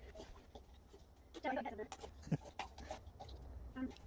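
Light taps and clicks of plastic cups being handled and set down, with a woman's short 'oh' about a second and a half in.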